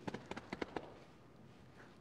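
Faint taps and clicks from someone moving about, a handful in the first second, then quiet room tone.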